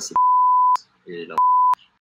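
Two censor bleeps, each a steady single-pitch beep that starts and stops abruptly. The first lasts about half a second; the second, shorter one comes after a few words of speech. They blank out the spoken answer naming a country.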